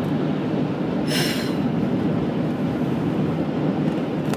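Steady low road and engine noise inside a moving car's cabin, with a short hiss about a second in.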